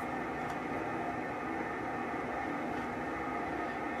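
A steady hum with several constant tones runs under a chisel working into the wood of a turned leg, with one faint click of a cut about half a second in.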